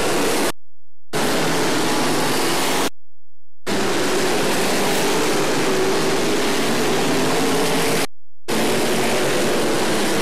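Dirt-track modified race cars' V8 engines running at racing speed in a pack, a loud steady drone mixed with noise. The sound drops out completely three times: about half a second in, about three seconds in, and near the end.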